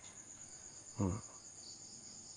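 Crickets chirring in a steady, continuous high-pitched drone, with one short sound about a second in.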